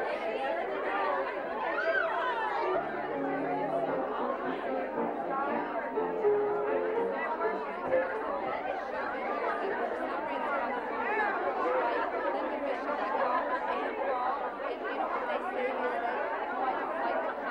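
Many women's voices chattering over one another in a large room, with a few sustained piano notes sounding in the first half.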